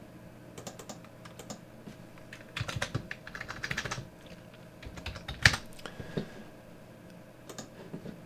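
Typing on a computer keyboard: scattered keystrokes, a quick run of them in the middle, and one louder click a little later.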